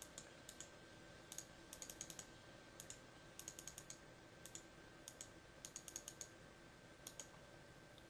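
Faint computer mouse clicks in quick runs of two to five, repeated every second or so, as the hand-replayer buttons are clicked.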